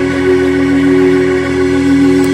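Keyboard holding a sustained chord: several steady notes that hold without fading, loud and unchanging.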